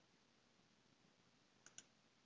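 Near silence with two faint computer mouse clicks in quick succession near the end.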